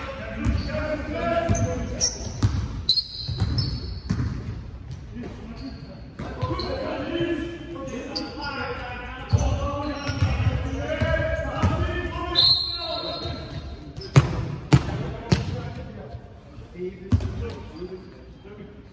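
Basketball bouncing on an indoor sports-hall court during a game, with short high squeaks of shoes on the floor and players calling out, all echoing in the large hall. A run of loud bounces comes near the end.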